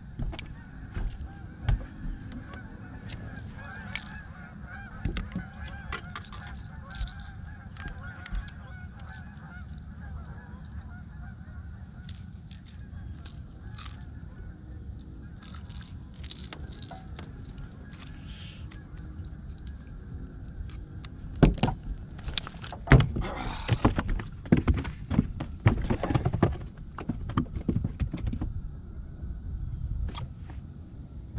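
A flock of birds honking, many overlapping calls over a faint steady high hum. About twenty seconds in this gives way to a burst of loud knocks and rattles on the boat.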